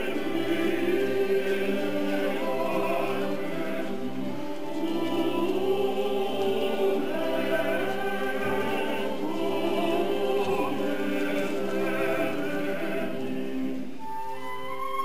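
A choir singing, many voices together in sustained lines.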